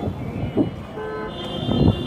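Road traffic noise with a vehicle horn sounding steadily from a little past halfway in.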